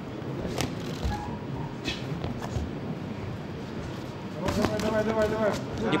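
Boxing-arena ambience: a steady hall murmur with a few sharp thuds in the first half. Near the end a voice calls out with one held note for about a second.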